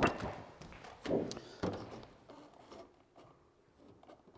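A few soft knocks and taps, the loudest right at the start, over quiet room tone.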